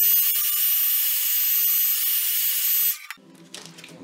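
Electric heat gun blowing hot air: a steady hiss with a thin high whine on top, switched off about three seconds in. It is warming a bead of hot glue on an electrostatic speaker panel.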